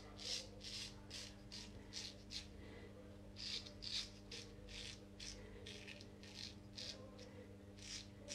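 Friodur straight razor cutting lathered stubble on the second pass: a run of short, faint scraping strokes, about three a second, with a steady low hum underneath.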